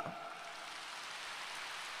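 Steady applause from a large audience, many hands clapping in an even patter, fairly quiet.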